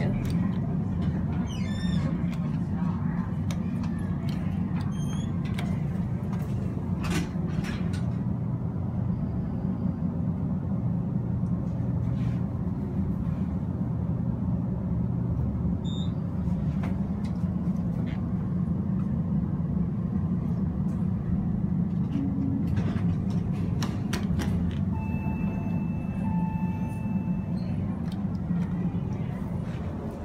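Hydraulic passenger elevator running, heard from inside the car: a steady low hum throughout, with a few clicks. Near the end comes a steady electronic tone lasting about two seconds.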